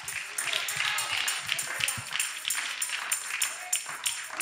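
Background church music with a quick steady beat, about four strikes a second, under scattered voices.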